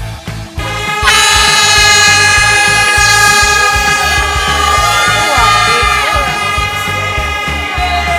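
An air horn sounding the race start: one long, loud blast beginning about a second in and held for about seven seconds, over background music with a steady beat.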